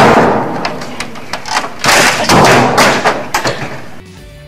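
A desktop computer and its keyboard being beaten at a cubicle desk: a run of loud crashing thumps over about three and a half seconds, dying down near the end.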